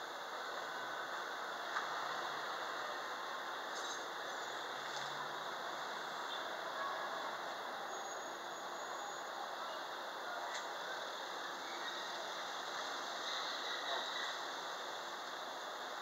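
Steady outdoor city ambience: an even hiss of distant street traffic, with a few faint short high squeaks now and then and a small tick about two seconds in.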